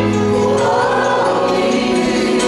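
Live church worship band performing a gospel song: several voices singing together over sustained accompaniment from violin, acoustic guitar and keyboard.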